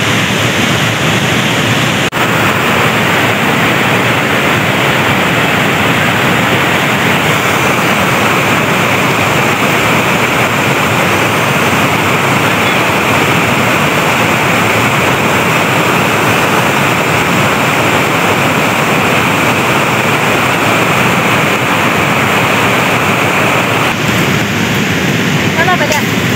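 Loud, steady rushing of a fast-flowing river close by, an even roar of water with no let-up.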